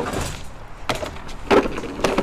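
Walk-behind lawn mower's wheels rolling down a steel mesh ramp, a rattling clatter with two sharper knocks, about a second in and again about half a second later.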